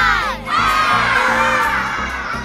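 A voice calls out the last number of a countdown, then from about half a second in a group of children cheer and shout over an upbeat children's music beat.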